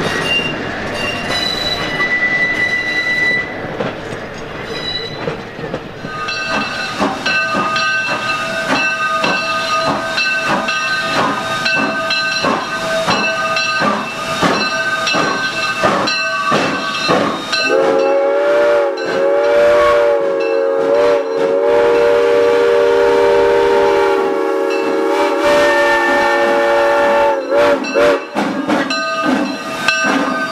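A vintage electric trolley running on rails, with a brief squeal. Then 1942-built 0-6-0T steam tank locomotive No. 10 stands at the platform with a steady hum and a regular beat. About 18 seconds in its whistle sounds one long blast of several notes together, lasting around eight seconds and wavering before it stops.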